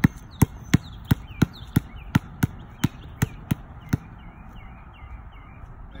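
Two basketballs being dribbled on a concrete court at different paces, about three sharp bounces a second, stopping about four seconds in.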